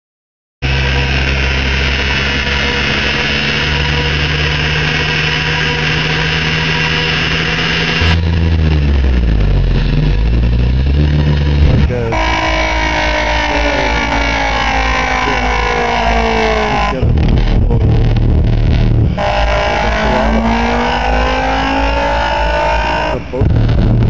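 Loud electronic music played live on synthesizers: steady low drones at first, then several tones sliding slowly downward together in long sweeps, twice, with short breaks between them.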